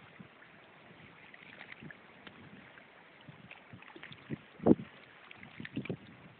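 Faint water lapping in the shallows with light wind on the microphone, scattered small clicks, and one short, sharp thump about four and a half seconds in.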